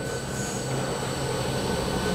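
Alfa Laval stainless centrifugal pump and its electric motor running, with a steady hum and a thin high whine, growing gradually louder as the drive speeds it up from about 15 Hz toward 50% speed. This is the flow at which the pump's suction pressure falls and it begins to cavitate.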